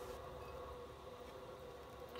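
Faint room tone with a low steady hum and no distinct sound event.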